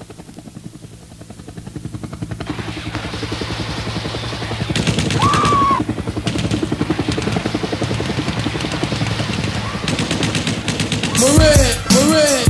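Sound effect of rapid automatic gunfire that fades in and builds over several seconds, with a short wavering tone about five seconds in. Near the end, deep booming bass-drum hits with falling pitch bring in a hip-hop beat.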